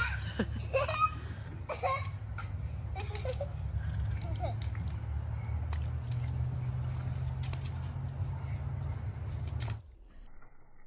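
Young children's voices and laughter during play, briefest and clearest in the first few seconds, over a steady low rumble that cuts off abruptly near the end.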